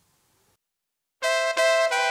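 Silence, then about a second in, a Korg Pa4X keyboard begins playing a sampled Zupan maple accordion: held chord notes, with a note change shortly after.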